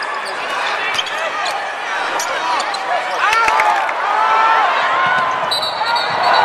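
Basketball game on a hardwood court over crowd chatter: the ball bouncing and sneakers squeaking on the floor. Near the end comes a short, steady referee's whistle blast, calling a foul.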